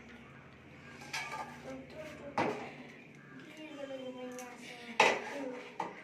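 Stainless-steel saucepan, tea strainer and steel cups clinking together as tea is strained and the pan is set down in the sink. A few sharp metal knocks, the loudest about five seconds in.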